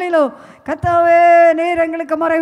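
A woman's amplified voice, eyes-closed and impassioned, drawing out long, nearly level sung-like tones into a microphone, with a short break about half a second in.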